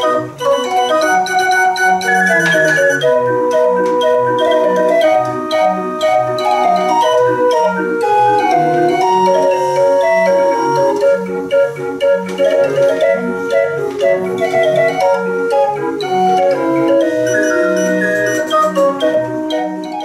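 A small MIDI-controlled street organ with 58 pipes playing a lively tune: held pipe notes over a steady alternating bass, with some light percussive strokes.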